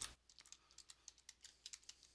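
Faint typing on a computer keyboard: a quick run of about eight keystrokes, a single word being typed.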